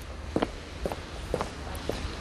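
Footsteps on a paved street at a steady walking pace, about two steps a second.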